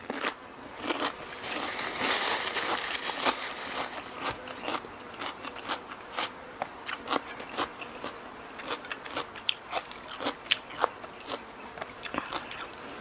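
Close-up chewing of raw radish: a run of crisp, irregular crunches in the mouth. A large fly buzzes around at times.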